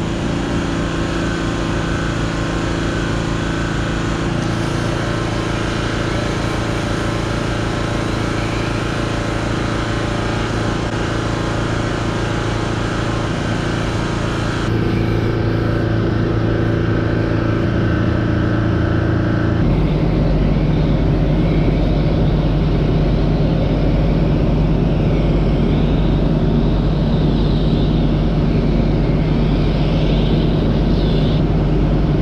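An engine running steadily at constant speed under a hiss of spraying water. The sound shifts abruptly about 5, 15 and 20 seconds in.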